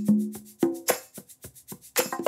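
A percussion groove audio file playing back, sharp hits with short pitched tones at about three or four a second. This is the looping groove after a Devamp cue has released its infinite loop, so it plays on through its final section.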